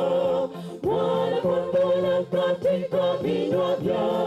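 A mixed choir of women's and men's voices singing in harmony, with a short break between phrases about half a second in.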